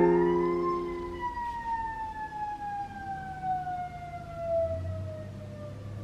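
A single siren wail rises in pitch and then slides slowly down over about five seconds. Under its start, a struck electric keyboard chord dies away within the first second or so.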